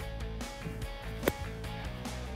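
Background guitar music plays throughout. About a second in there is a single short, sharp strike: a Black Magic wedge hitting the sand on a bunker shot.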